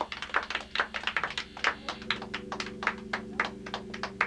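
Quick, irregular run of light clicking taps from a drummer's sticks, about six to eight a second, between songs. A steady low hum from the band's amplifiers runs underneath.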